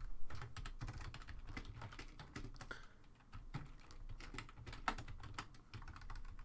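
Typing on a computer keyboard: a quick, uneven run of keystrokes with a short pause about three seconds in.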